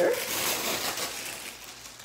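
A sheet of tissue paper rustling and crinkling as it is handled in the hands, fading toward the end.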